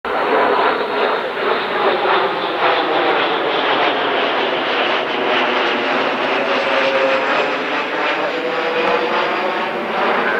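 Two Embraer Phenom 100 light jets passing overhead in formation, their turbofan engines giving a steady, loud rushing jet noise with a faint steady tone in it.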